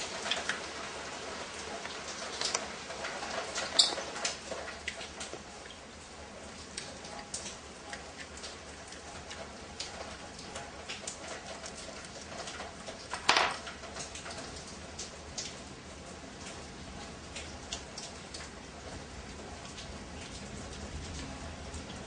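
Faint scattered clicks and taps of a spark plug socket wrench and hands working on a motorcycle's single-cylinder engine as the spark plug is unscrewed, with one sharper knock about 13 seconds in.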